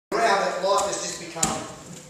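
A voice at first, then a single sharp thump about a second and a half in, from bodies or feet hitting a training mat during grappling.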